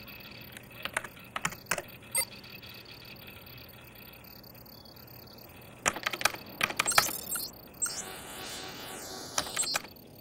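Computer keyboard being typed on, scattered keystrokes at first, then a quick run of keystrokes about six seconds in.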